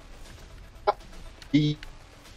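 A man's voice making two brief clipped syllables in a pause in speech, one about a second in and a slightly longer one near the end.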